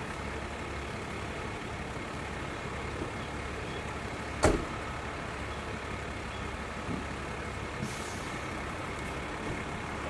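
A heavy vehicle idling steadily. A single sharp knock comes about halfway through, and a brief hiss of air follows near the end.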